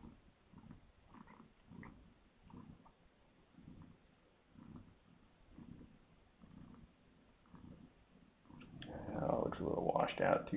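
Mother cat purring in slow, even pulses while nursing her newborn kittens. A louder person's voice comes in near the end.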